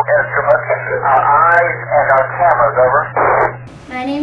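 A man's voice received over an amateur-radio downlink from the International Space Station, thin and cut off at the top, with a steady low hum underneath; the transmission cuts off shortly before the end.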